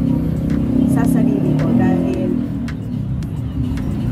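A motor vehicle engine running: a steady low rumble.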